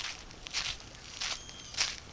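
Footsteps in strap sandals on grit-covered pavement, a gritty crunch with each step, about four steps at an even walking pace.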